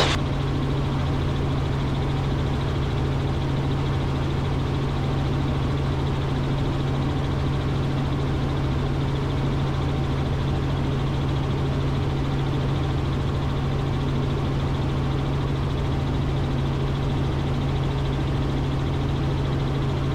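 Robinson R44 helicopter in cruise flight, heard from inside the cabin: a steady drone of engine and rotors with a strong low hum that does not change.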